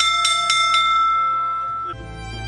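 Small wall-mounted school bell rung by hand, the clapper striking quickly about four times a second, then left ringing until it cuts off suddenly near the end. It is the old school's bell that once called the pupils in.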